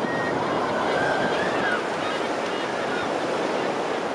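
Steady rushing wind noise from airflow over the camera microphone of a hang glider in flight, with faint thin high tones near the start and about a second and a half in.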